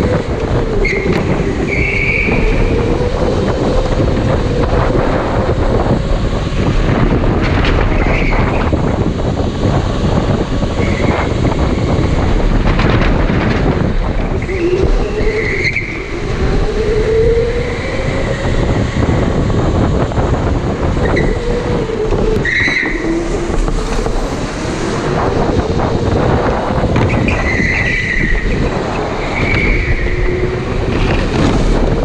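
Electric go-kart at speed: the motor whines, its pitch rising and falling with speed, under a steady rush of wind on the onboard microphone. Short tyre squeals come through the corners every few seconds.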